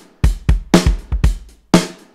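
Addictive Drums 2 software drum kit playing a basic beat on its default acoustic kit: kick drum and snare alternating, the snare landing about once a second.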